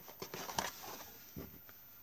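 Light rustling and a few soft taps from hands handling a tissue box and a piece of crochet, mostly in the first second, with one more brief sound about a second and a half in.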